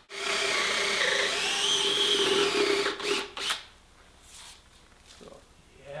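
Cordless drill boring into red cedar with a large Forstner bit. The motor runs under load for about three and a half seconds with a wavering whine, then cuts off. A few faint knocks follow.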